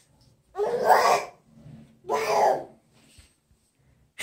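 A person laughing in two short, breathy bursts about a second apart.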